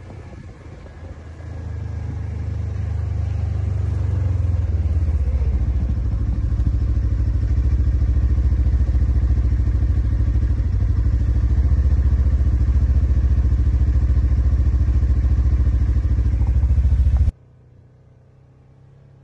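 Side-by-side UTV engine running as the machine drives, heard from the seat. It builds up over the first few seconds to a loud, steady hum, then cuts off suddenly near the end.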